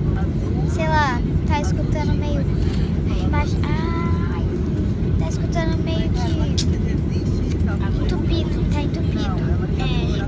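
Steady low rumble of an airliner's passenger cabin, with girls' voices talking over it throughout.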